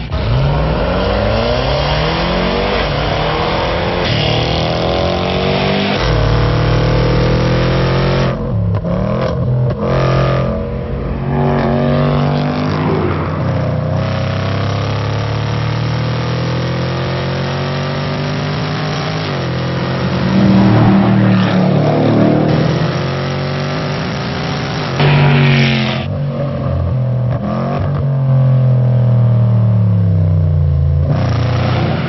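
Range Rover Sport SVR's supercharged V8 under hard acceleration, its revs climbing and dropping back again and again through the gear changes, with short lifts off the throttle between the pulls.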